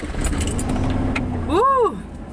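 Low, steady rumble of a car engine running, with a few light jingles of keys. Near the end a woman gives a short hummed 'mm' that rises and falls.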